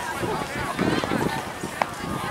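Voices of players and spectators calling across an outdoor soccer field, faint and distant, with a low rumble about halfway through and a single short tap near the end.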